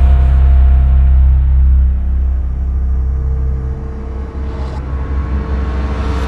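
Ominous, dark background music: a deep low drone with steady held tones above it. It swells in at the start and eases slightly after about two seconds.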